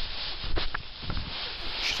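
Feet scuffing and kicking through deep, dry fallen leaves: a rough, rustling crunch with uneven sharper steps.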